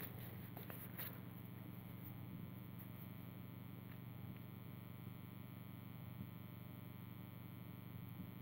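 Quiet room tone with a low, steady electrical hum and one faint click about a second in.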